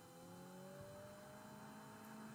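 Near silence: a faint sustained tone that rises slowly in pitch.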